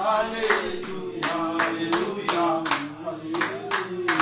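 Hands clapping in a steady rhythm, several claps a second, under sung voices of a praise chorus.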